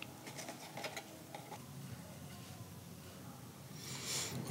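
Faint small clicks and scratches of metal tweezers picking through the soft digested remains inside a pitcher plant's pitcher. The clicks come mostly in the first second and a half, then only a low background hiss remains.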